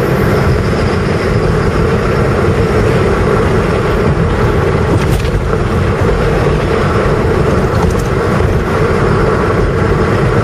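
Steady engine and tyre noise of a car driving along an asphalt road, heard from inside the cabin.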